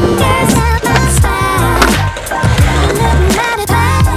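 Skateboard wheels rolling on concrete with a few sharp clacks of the board, over a music track with a sung vocal and a steady bass line.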